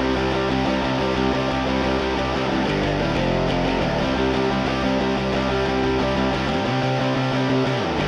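Playback of a fast, old-school punk-rock song outro: electric guitar and bass, mixed with the bass panned hard right and the guitar hard left. The lowest bass notes drop out for about a second near the end.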